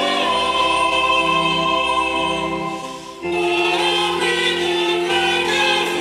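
Choir singing in long held chords, with a brief break about three seconds in before the next chord begins.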